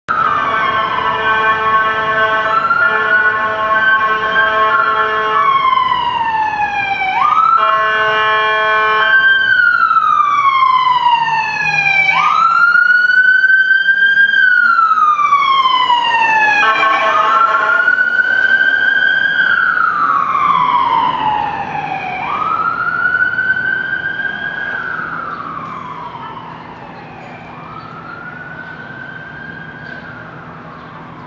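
Emergency vehicle siren wailing in slow sweeps, each rising quickly and falling away over about five seconds. A steady blaring horn sounds at the start and twice more. It grows fainter over the last few seconds.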